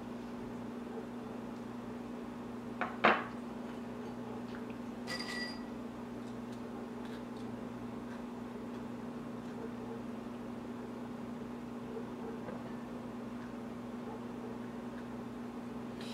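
A steady low hum, broken by a sharp knock about three seconds in and a short ringing metallic clink about five seconds in, as a metal knife is used to scrape cream cheese into a rubber treat toy and then set down.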